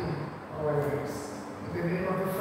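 Only a man's speech, through a microphone: the words were not transcribed.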